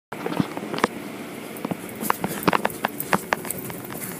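Automated car wash running behind glass: a steady hiss of spraying water, with irregular sharp clicks and knocks scattered over it that stop near the end.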